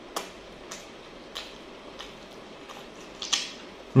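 Close-miked chewing of ayam kremes, fried chicken with crispy fried crumbs: a handful of short, sharp mouth clicks spaced about half a second to a second apart, the loudest a little after three seconds in.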